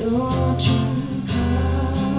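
A woman singing over strummed acoustic guitars in a live performance.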